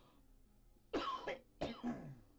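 A person coughing twice, about a second in and again half a second later, against near silence.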